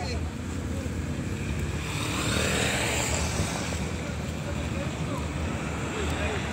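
Road traffic: a car passes, its noise swelling and fading about two to four seconds in, over a steady low rumble.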